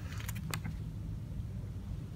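Faint paper handling as a peeled picture sticker is lined up over its spot on an album page, with a couple of light clicks near the start and about half a second in, over a steady low rumble.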